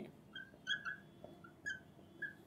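Marker tip squeaking on a glass writing board while a word is written: a series of short, high squeaks, about five in two seconds.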